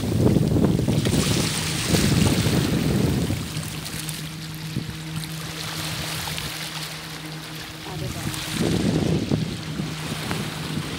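Wind buffeting a phone's microphone by the sea, in low rumbling gusts: about a second in, again around two to three seconds, and near the end. A steady low hum runs underneath.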